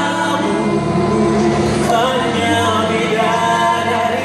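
Four-part a cappella vocal group of bass, tenor, alto and soprano singing in harmony into microphones. A low bass line runs under sustained upper voices.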